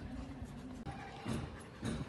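Faint sounds from a Belgian Malinois dog, with a couple of short soft noises in the second half.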